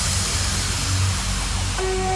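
Uplifting trance track in a breakdown: the beat has dropped out, leaving a loud wash of white noise over a low bass drone. Sustained synth pad chords enter near the end.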